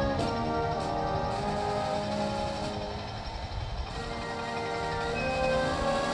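Military brass band playing, with held chords that shift from note to note.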